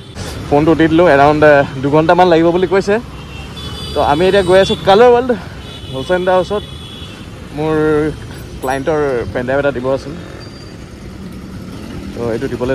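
Mostly speech: a voice talking in several stretches, over the steady noise of street traffic.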